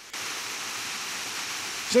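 Small waterfall pouring down a rock face into a pool: a steady rushing hiss that cuts in abruptly just after the start.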